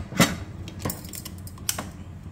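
Metal lid of a pressure cooker being fitted and closed: a sharp clack just after the start, then fainter clicks about a second in and near the end.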